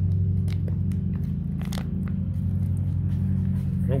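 A few sharp crinkles and crackles from an opened MRE entree pouch being handled and squeezed out over a plate, over a steady low hum.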